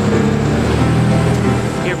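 Low, steady hum of a motor vehicle's engine, a little louder in the middle.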